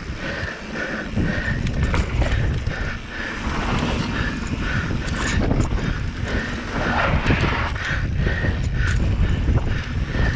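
Electric mountain bike riding down dirt singletrack: wind buffeting the helmet-camera microphone and knobby tyres rumbling over the dirt, with a light rhythmic ticking, about two or three a second, running underneath.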